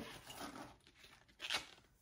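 Packaging rustling as a paddle hairbrush is slid out of its sheer fabric drawstring pouch with a cardboard card attached: a few soft rustles, the loudest about a second and a half in.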